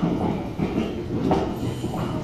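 A train running by, with a low, uneven rumble of wheels on the rails and a faint steady high squeal.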